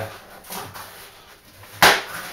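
Faint handling of foam pipe insulation being pulled back from beer lines, then one sharp knock near the end.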